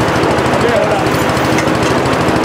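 Small petrol engine of a positive-pressure ventilation (PPV) fan running steadily at full speed, a fast even pulsing beat under the fan noise, blowing smoke out of the burnt storage room. Voices talk faintly under it.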